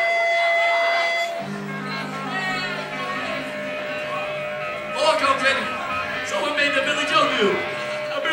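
An electric guitar rings a held chord through its amp about a second and a half in, dying away over a couple of seconds. From about five seconds in, voices shouting and talking close to the recorder come in irregular bursts, and a faint steady tone hums underneath.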